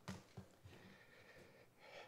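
Near silence at a podium microphone, broken by a couple of soft knocks just after the start, with papers in hand, and a short breath close to the microphone near the end.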